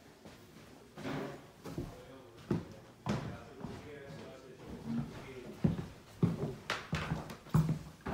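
Footsteps on a hardwood floor, then several louder, sharp knocks on a solid wooden door in the last few seconds, with faint talking in between.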